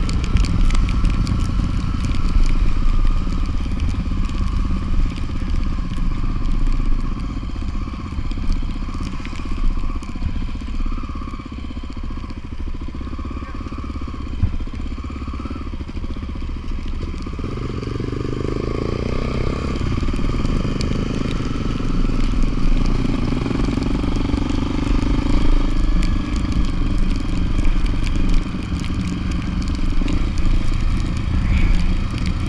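Motorcycle engine running steadily while riding a dirt road, heard from the bike itself, with a dense crackle of wind and road noise; the engine note rises and shifts a little past the middle.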